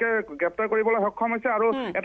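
Speech only: a person's voice narrating the news without pause, with a narrow, telephone-like sound.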